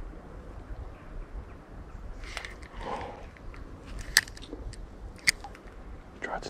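Two sharp clicks, about four and five seconds in, with soft rustling just before them, over a low rumble of wind on the microphone.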